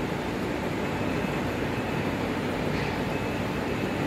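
Steady background noise, an even rush and rumble with no distinct events in it.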